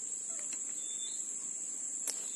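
Steady high-pitched insect chorus, a constant shrill drone that does not let up, with a few faint ticks and a brief faint chirp about a second in.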